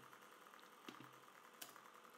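Near silence: room tone with two faint clicks, about a second in and again just past the middle, from a computer mouse and keyboard being used.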